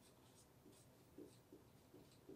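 Faint, brief, irregular squeaks and scratches of a marker pen writing on a whiteboard.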